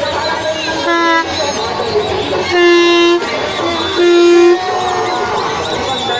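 Three short horn toots on one steady pitch, the second and third longer and louder than the first, over a constant crowd din.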